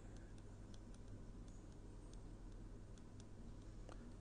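Faint, irregular ticks of a stylus tapping and writing on a tablet screen, over a low steady hum.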